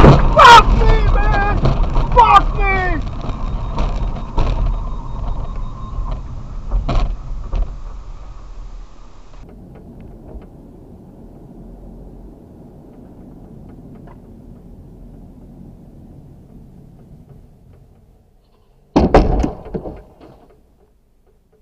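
Sharp knocks and a loud wavering sound at first, dying away into a low, steady road noise inside a moving car, with a sudden loud burst near the end.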